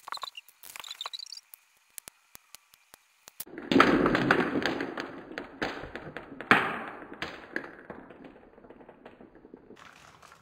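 Small plastic balls on a toy tabletop pool table: a few light clicks, then from about three and a half seconds in a loud clatter of many balls knocked about by hand and colliding against each other and the plastic rails, with one sharp knock about halfway through, the rattle of rolling balls dying away over the last few seconds.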